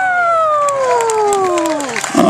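A man's long drawn-out call over a PA loudspeaker, one held note sliding steadily down in pitch from high to low before he goes on speaking.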